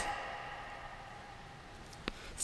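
Faint room tone of an indoor sports hall, a low steady hiss, with the echo of a voice dying away just at the start.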